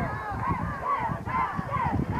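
Crowd of football spectators and sideline players yelling and cheering together as a play runs, many voices overlapping in short rising-and-falling shouts.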